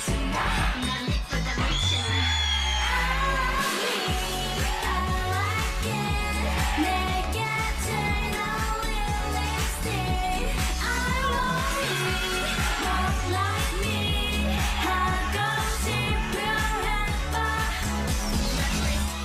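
K-pop dance song: female vocals sung over a steady, bass-heavy electronic beat, with the bass cutting out briefly about four seconds in.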